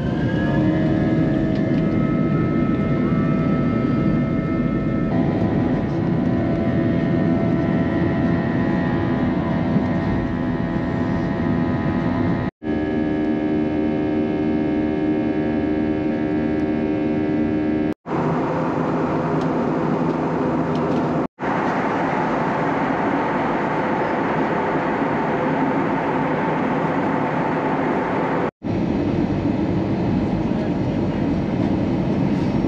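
Jet airliner's turbofan engines heard from inside the cabin, a whine rising in pitch as they spool up for takeoff and then levelling off into steady engine noise with held whining tones. The sound breaks off abruptly four times.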